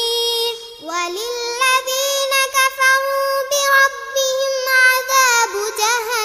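A young girl singing a Bangla ghazal, an Islamic devotional song: a held note that breaks off just before a second in, then a long melodic line of held, ornamented notes.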